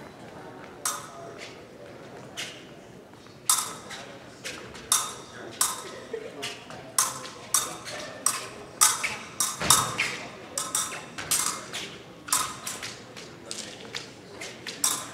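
Épée blades clicking and tapping against each other in a fencing bout: a string of short, sharp metallic strikes, irregular and about every half second, beginning a few seconds in. One heavier thud comes near the middle.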